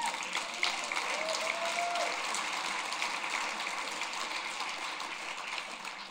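Audience applauding, with a couple of whoops in the first two seconds; the applause dies away toward the end.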